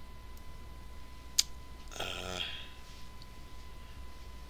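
Quiet room tone with a steady low hum. A single sharp mouse click comes about a second and a half in, and a brief wordless vocal sound follows about two seconds in.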